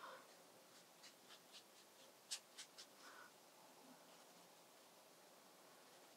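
Faint handling of a watercolour brush and paint: a run of about eight light ticks and taps, the loudest about two seconds in, otherwise near silence.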